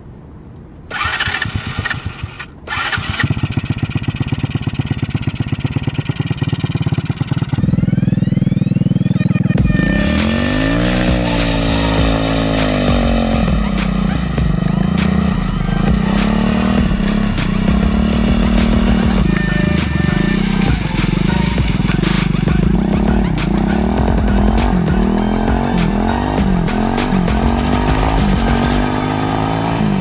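Electric-start 125cc four-stroke pit-bike engine on a homemade drift trike: cranked by its starter about a second in, it catches and idles. From about ten seconds in, background music with a steady beat plays over the engine, which revs up and down as the trike is ridden.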